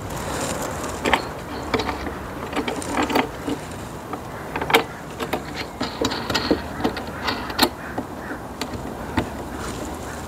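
Metal pole and mounting hardware being handled and fastened by hand: irregular metallic clicks, knocks and scraping, with a few sharper knocks among them.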